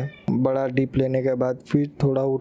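A man's voice speaking, with long held, steady-pitched vowels.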